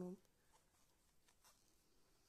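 Near silence: faint scratching of yarn and crochet hook as a double crochet stitch is worked, with a few soft ticks.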